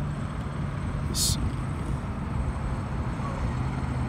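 Steady low background rumble with a constant low hum. A brief high hiss about a second in.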